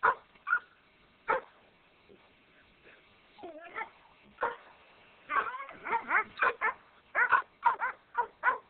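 Doberman barking: a few single barks in the first second and a half, a longer wavering call near the middle, then a quick run of barks from about five seconds in.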